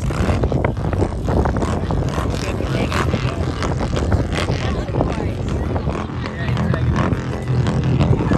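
Motorcycle engines running in a stopped line of traffic, with the voices of onlookers talking over them.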